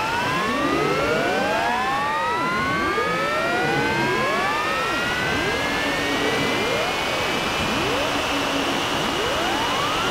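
Electronic music: many overlapping pitch glides rising and bending upward like a cloud of sirens, over short held notes lower down.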